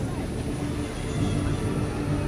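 Jet ski engine running out on the water, a steady drone.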